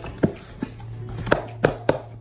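A cardboard box handled and opened by hand: about five sharp taps and knocks of cardboard in two seconds, the loudest in the second half.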